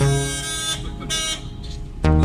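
Background music dips for a moment, leaving road and traffic noise from a moving car with faint held tones. The music comes back in loudly at the end.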